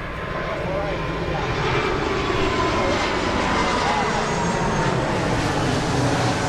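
Jet airliner flying overhead: a steady rushing engine noise that swells over the first couple of seconds and then holds.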